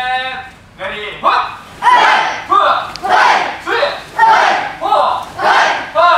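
A class of taekwondo students shouting together in a quick, steady rhythm, about ten loud shouts in five seconds, after a held call at the very start.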